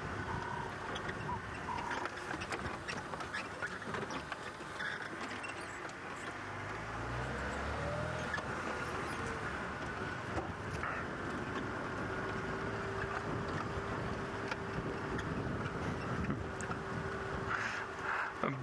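Open safari vehicle driving along a sandy dirt track: the engine runs steadily under road noise and small rattles, and its note swells briefly about halfway through.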